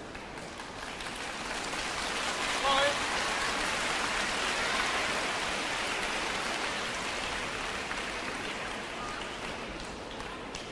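Audience applauding, swelling over a few seconds and then dying away, with a short shout about three seconds in.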